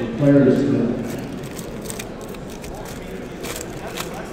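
Foil trading-card pack wrappers crinkling and rustling under a hand, a string of small crackles with a louder crinkle near the end. A short voice sound in the first second is the loudest thing.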